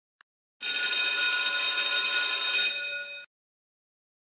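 A school bell rings loudly for about two seconds, then stops and dies away over about half a second.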